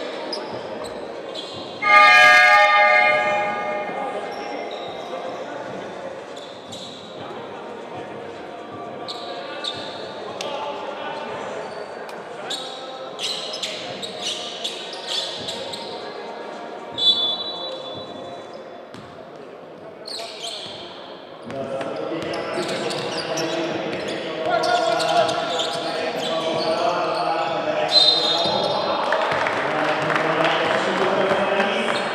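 A basketball arena's game horn blasts once, about a second and a half long, about two seconds in, echoing in the hall. Basketballs bounce on the hardwood court. Short referee's whistle blasts come near the middle and again near the end, and voices and crowd noise build over the last third as play restarts.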